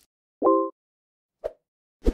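An animated-intro sound effect: a short chord-like tone lasting about a quarter of a second, then a brief small plop about a second later, with silence around them.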